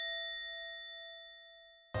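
A single bell-like ding sound effect ringing on and fading away, then cut off just before the end.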